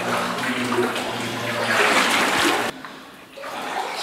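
Footsteps wading through shallow water in a flooded mine tunnel, the water sloshing and splashing around the legs. The sloshing stops suddenly about two-thirds of the way through, and a quieter stretch follows.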